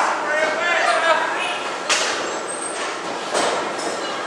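Shouting voices, then two sharp smacks from wrestlers in the ring, about two and three and a half seconds in.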